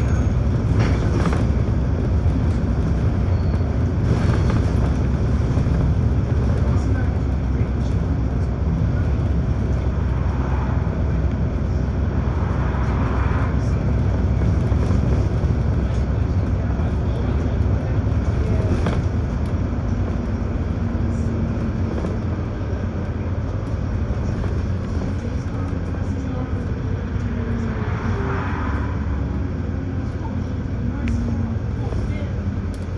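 Steady engine and road rumble of a VDL DB300 (Wright Gemini 2) double-decker bus under way, heard from inside the bus. A faint whine runs alongside in the second half.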